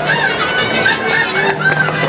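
Music for Mexican folklórico dancing: a high, wavering melody line with quick turns over steady lower notes.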